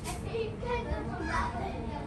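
Background chatter of voices, children's among them, with no clear words, over a steady low background noise.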